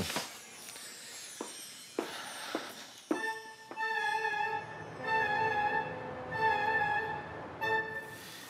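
Background music: a violin holding long, sustained notes that come in about three seconds in, after a few faint knocks.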